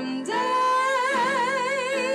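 A woman singing into a microphone, holding one long note from about a third of a second in, with vibrato that widens as it goes, over instrumental accompaniment.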